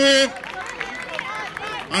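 Mostly speech: a man's commentating voice trails off at the very start, followed by fainter voices of people talking nearby.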